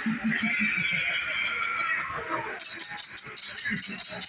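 Halloween animatronic carnival fortune wheel starting to spin, with a rapid ticking of about five or six clicks a second beginning about two-thirds of the way in. Before the ticking, a prop voice and music play.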